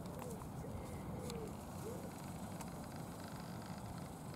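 A pigeon cooing, a few short coos that rise and fall in pitch during the first two seconds, over a steady low rumble.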